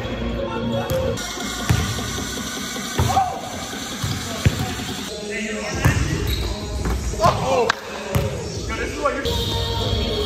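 Background music with vocals, with a basketball bouncing on a hardwood gym floor, a few sharp thuds spread through it.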